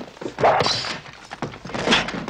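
A scuffle: a run of thuds and knocks as a body hits the floor and furniture. The loudest impacts come about half a second in and again near the end.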